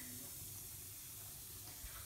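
Faint, steady hiss of water in a bathtub.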